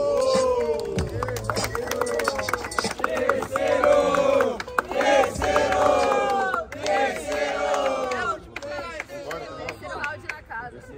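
A crowd of spectators shouting and cheering together in many overlapping voices, dying down near the end. A hip-hop beat plays under the first two seconds, then cuts off.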